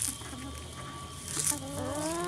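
Bantam hens foraging on grass with faint scattered ticks and rustles. Near the end one hen gives a single drawn-out call that rises slightly.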